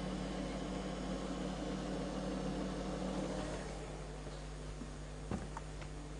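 Small demonstration wind tunnel's fan running steadily with a low hum, dropping a little in level a bit past halfway. A single sharp click near the end.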